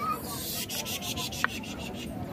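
A scratchy rubbing noise, with a quick run of short scrapes in the first second.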